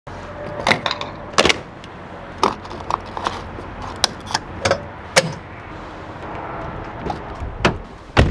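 Refuelling handling noises at the filler neck: a series of sharp, irregular plastic-and-metal clicks and clacks as the fuel pump nozzle is taken out and the fuel cap is screwed back on, over a steady background hiss.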